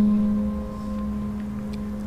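Soft ambient background music: one low sustained note with fainter higher tones above it, held steady and easing down in level over the first second.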